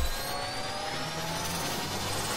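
Electronic riser sound effect from a logo animation: a rushing, noisy sweep with several thin tones gliding slowly upward.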